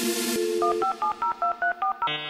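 Telephone keypad dialing tones in the intro of a grime instrumental: a short steady low tone, then about eight quick beeps, each two pitches sounding together.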